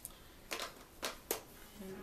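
Three short handling noises, rustles ending in a sharp click, as long hair is flipped aside and a handheld blow dryer is picked up. A word is spoken near the end.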